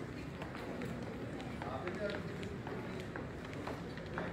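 Low background of faint, indistinct voices with a few small clicks and taps.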